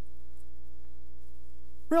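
Steady electrical mains hum, a low drone with several steady tones above it; a man's voice starts right at the end.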